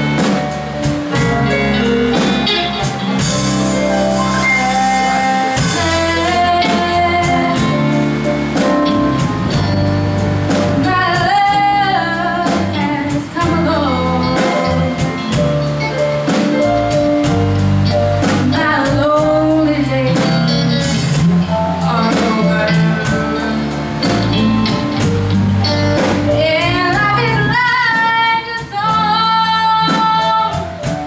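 A live band playing a song, with a girl singing lead vocals over drum kit and electric guitar.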